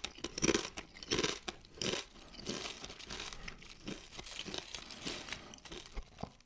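Close-miked crunching of Doritos tortilla chips being chewed, with several loud crunches in the first two seconds. Fainter crackling follows as the chips are handled in the palm.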